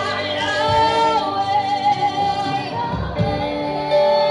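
Slow worship song sung by a group, with female voices leading on long, held notes.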